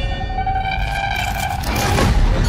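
Horror trailer score: sustained high tones held over a deep, continuous low rumble.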